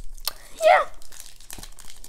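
Foil booster-pack wrapper being torn open and crinkling in the hands, a scatter of sharp crackles, with a short voice sound about half a second in.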